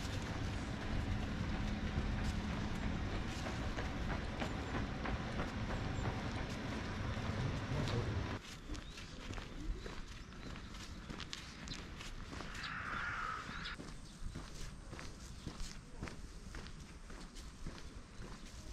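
Footsteps of a person walking on stone and gravel paving, a series of short steps over outdoor background noise. The background drops suddenly about eight seconds in, and a short higher-pitched sound comes about two-thirds of the way through.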